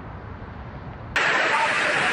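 Typhoon wind and heavy rain: a low, steady rumble that switches abruptly about a second in to a much louder, hissing rush of wind-driven rain.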